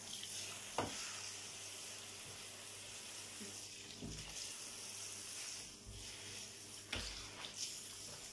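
Water spraying from a handheld shower head onto a dog and the bathtub, a steady hiss, with two sharp knocks, one about a second in and one near the end.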